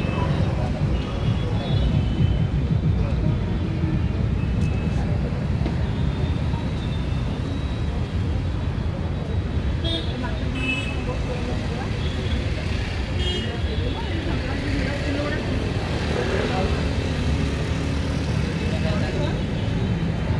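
Steady low street rumble of traffic with indistinct background voices, and a couple of short, high metallic clinks partway through.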